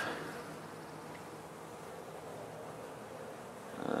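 Honeybees buzzing in a steady, faint hum.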